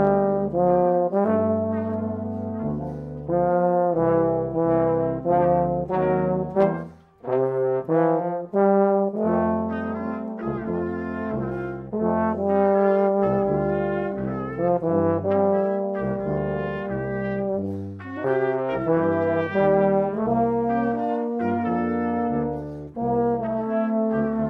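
Brass quintet of trumpet, French horn, tuba and trombone playing a piece together, the tuba moving note by note underneath, with a short break about seven seconds in before the music carries on.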